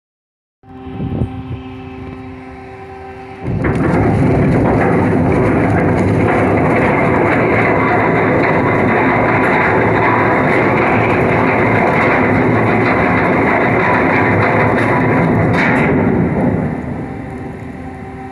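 Ship's steel anchor chain paying out as the anchor is let go: a loud, continuous run of chain noise that sets in about three and a half seconds in and dies away near the end. A steady machinery hum with several held tones is heard before and after it.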